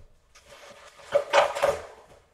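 Off-camera rummaging: things being handled, with rubbing and clattering that grow loudest from about a second in and die away near the end.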